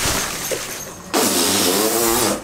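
Water balloons squishing and rubbing against one another as someone wades through a deep pile of them, in a rustling hiss that fades over the first second, then grows suddenly louder about a second in.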